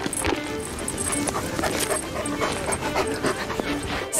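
Background music with long held notes, with wolves heard beneath it.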